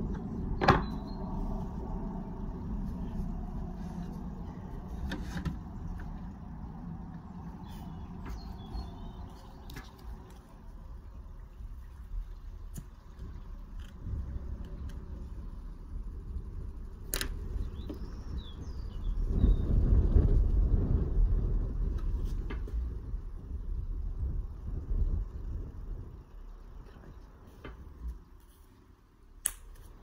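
A few sharp taps of a lead dressing tool on sheet lead wrapped around a steel flue pipe, over a low rumble that swells for a few seconds about two-thirds of the way through.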